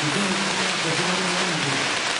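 Audience applause: a dense, steady clapping that starts suddenly just before and carries on throughout.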